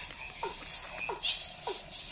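Animals calling: a short call that falls in pitch repeats about every two-thirds of a second, with higher chirps mixed in.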